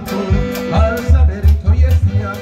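Live band playing an upbeat song at a steady dancing beat, with strong bass notes and held melody tones over it.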